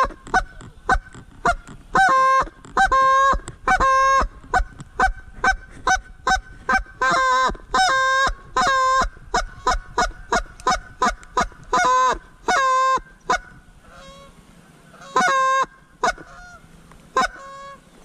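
Duck call blown in a long run of loud, short mallard-hen-style quacks, with a faster chatter about seven seconds in, then a pause and a few more quacks near the end: calling a single duck in to the gun.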